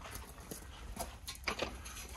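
A few sharp knocks and clicks, about four in two seconds, from a steel screw pile being turned by hand through a gearbox with a long lever bar.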